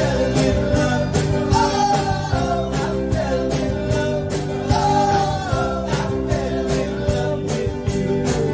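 Live folk-rock band playing: fiddle melody over guitars and a drum kit keeping a steady beat.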